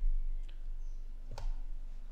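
Two sharp clicks about a second apart, typical of a computer mouse, over a low steady hum.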